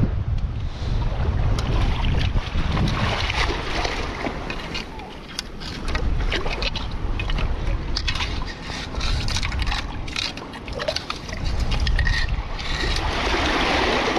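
Wind buffeting the microphone, with shallow seawater sloshing and splashing as a thin rod is poked about in a burrow under a rock. Scattered short clicks and knocks run throughout.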